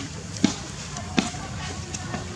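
Two dull thumps about three-quarters of a second apart, over a steady low background.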